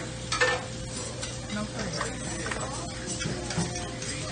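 Diner kitchen at work: food sizzling on a griddle, with scattered clinks of utensils and dishes, one louder about half a second in. A steady hum of kitchen equipment runs underneath.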